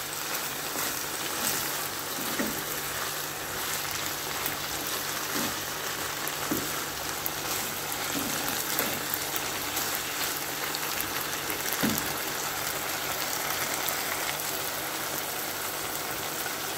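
Minced pork and vegetables sizzling steadily in a frying pan, with a few soft knocks and scrapes of a wooden spatula stirring them.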